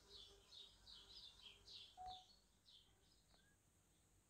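Near silence with faint bird chirps in the background, a quick series of short high notes that stops about three seconds in.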